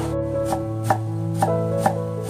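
Large kitchen knife chopping onion on a wooden cutting board, about four sharp strokes roughly two a second, over background music.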